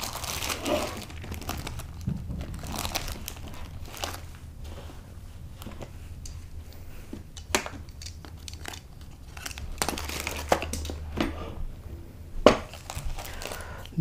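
Plastic packaging crinkling and crackling as hands open and handle it, in an irregular run of rustles with a few sharper snaps, the loudest near the end.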